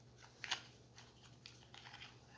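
Faint handling sounds of a small tube being turned in the hands: one sharp click about half a second in, then a few softer ticks.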